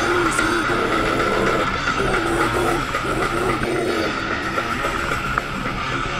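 Death metal band playing live: distorted electric guitar and bass repeating a riff over drums, picked up by a camera microphone on the stage.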